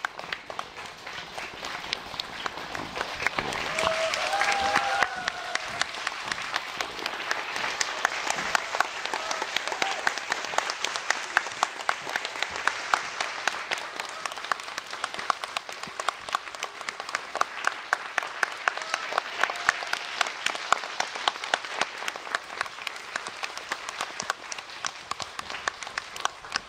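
Theatre audience applauding at a curtain call: dense, continuous clapping with individual nearby claps standing out sharply, swelling louder about four seconds in.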